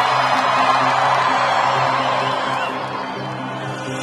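Beatless breakdown of an electronic dance music DJ set: a sustained synth chord under a noisy wash, slowly fading.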